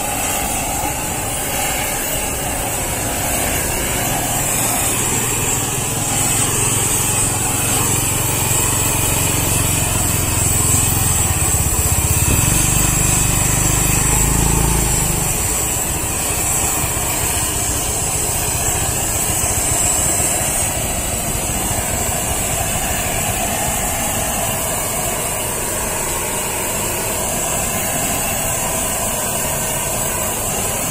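Handheld gas torch burning steadily as its flame singes the skin of a pig's head. A low motor hum runs under it from about 4 s in, loudest around 12 to 14 s, and fades out at about 15 s.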